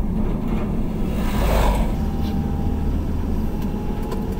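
Steady engine and road rumble of a moving vehicle, with an oncoming vehicle passing by in a brief swell of noise about a second and a half in.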